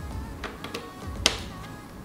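Background music with steady tones, and a sharp click about a second in as a USB cable plug is pushed into the lamp's USB charging port, with a couple of fainter taps before it.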